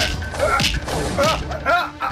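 A sudden whip-like crack right at the start as one man seizes another by the collar, followed by three short shouted syllables in the scuffle.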